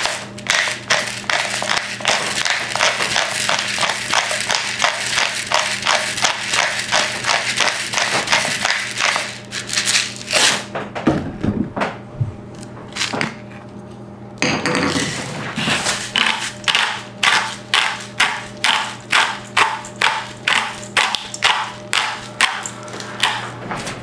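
Hand-twisted pepper mill grinding black pepper, a run of short gritty crunching clicks. The clicks come quickly, about three a second, at first, stop briefly near the middle, then return more slowly at about two a second.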